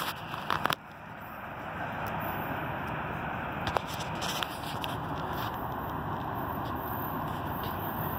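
Approaching diesel freight train, a steady rumble that builds over the first two seconds and then holds, with a few short clicks near the start and again about four seconds in.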